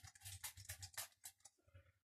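Faint, quick run of short spritzes from a Frylight pump-action sunflower oil cooking spray being sprayed into the grill's cooking pot: about half a dozen strokes in the first second or so, then it stops.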